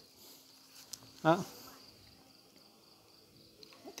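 Faint steady high insect trill, like crickets, in the background, with a single short spoken syllable about a second in and a light click just before it.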